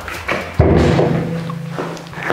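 A single thud about half a second in as a head bumps into a table and chairs mounted upside down on the ceiling, with background music holding a low note afterwards.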